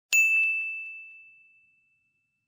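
A single high, bell-like ding struck once and ringing away over about a second and a half.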